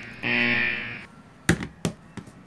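A short guitar chord played as a music sting, held for under a second, then two sharp knocks about a third of a second apart near the end.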